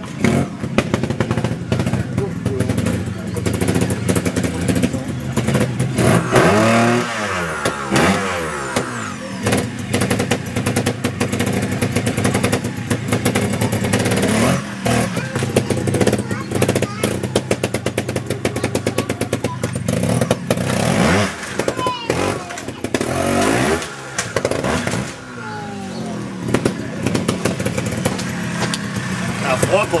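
Trials motorcycle engine revving in repeated short blips, its pitch rising and falling, mixed with sharp clattering knocks as the bike hops onto and off obstacles. A voice can be heard in the mix.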